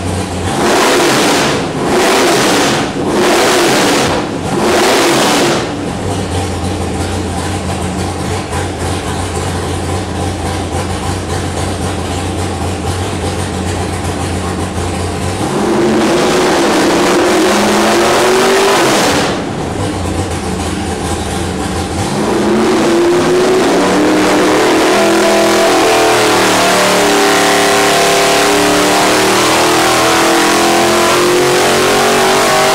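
A 632-cubic-inch naturally aspirated, carbureted big-block Chevy V8 on an engine dyno. In the first six seconds it revs sharply four times from idle, then idles steadily. About sixteen seconds in the revs rise briefly and drop back. About twenty-two seconds in a loaded pull begins, and the revs climb steadily to nearly 5,000 rpm.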